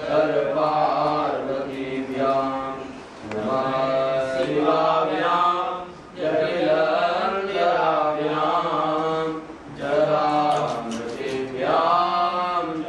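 A man chanting a Sanskrit mantra in praise of Shiva, in long held, sung phrases with brief pauses for breath about every three seconds.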